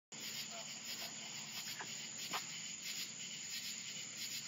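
Crickets chirping in a steady, pulsing night chorus, with a low steady hum underneath.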